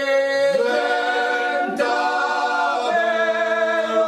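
Three men singing a Corsican paghjella a cappella: traditional three-part male polyphony in close harmony. The voices hold long notes together and shift to a new chord about every second.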